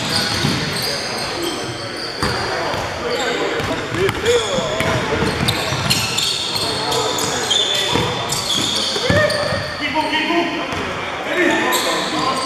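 Pickup basketball game in an echoing gym: a basketball bouncing on the hardwood floor, sneakers squeaking, and players' voices calling out across the court.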